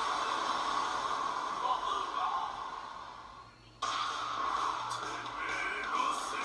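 Anime soundtrack played back through the reaction video: music and effects that fade down, then cut abruptly to a new, louder scene about four seconds in.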